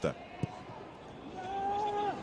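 Steady stadium crowd noise from a football match broadcast, with a single sharp thud of the ball being kicked about half a second in. Near the end a held, voice-like note comes up over the crowd.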